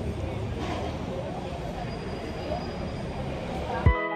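Fast-food restaurant room sound: a steady hum with faint background voices. Near the end it cuts abruptly to guitar music.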